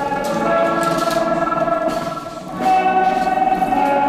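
Electric guitar music with held, ringing notes. It dips briefly about two and a half seconds in, then comes back.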